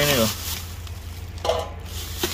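Plastic bags and packaging rustling and crinkling as gloved hands dig through a cardboard box.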